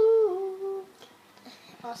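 A child humming one long held note that steps down in pitch and stops about a second in.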